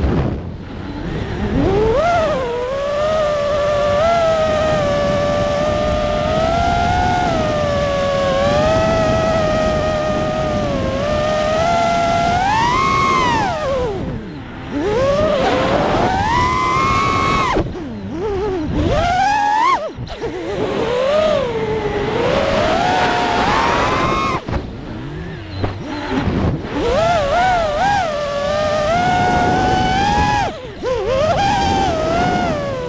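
FPV freestyle quadcopter's brushless motors and propellers whining as heard from its onboard camera, the pitch sweeping up and down with the throttle. The whine drops away sharply several times around the middle and again near the end, as the throttle is chopped and punched back up.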